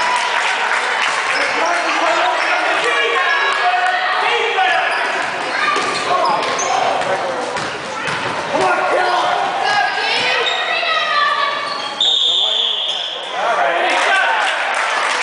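Basketball being dribbled on a hardwood gym floor during a youth game, with spectators' and players' voices echoing in the large gym. A short, high whistle blast sounds near the end as play stops.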